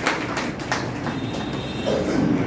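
Scattered applause from a small audience, irregular claps over a low steady room noise, thinning out after the first second.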